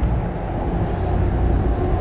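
Steady low rumble of vehicle noise, with a faint steady hum joining about half a second in.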